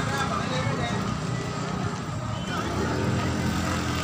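Busy outdoor crowd ambience: faint overlapping chatter of people mixed with a steady rumble of vehicle engines and traffic.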